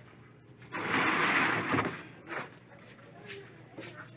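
A short burst of water spray, lasting about a second, over tray-grown tomato seedlings.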